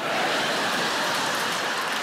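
Studio audience applauding, starting suddenly and holding steady as a dense wash of clapping.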